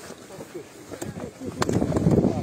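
Indistinct voices of people talking nearby, with wind rumbling on the microphone and a couple of sharp clicks from handling. The noise grows louder near the end.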